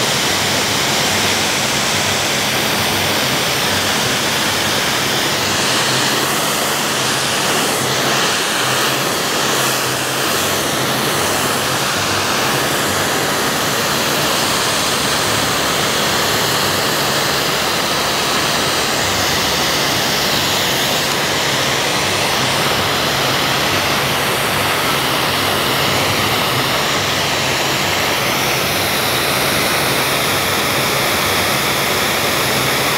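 ANOVI 30S electric high-pressure washer (3 kW motor, 180 bar) spraying through its green 25-degree fan nozzle: a loud, steady hiss of the water jet striking weeds and pavement.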